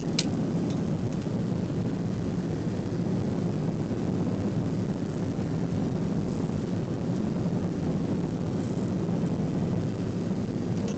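Airliner cabin noise in cruise: the engines and rushing air make a steady low drone heard from a window seat. A single short click comes just after the start.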